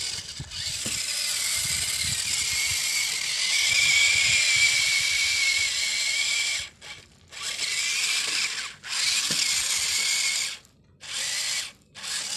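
Small geared electric motor of a homemade toy tractor whirring at a high pitch. It runs in spurts, stopping and restarting abruptly several times in the second half.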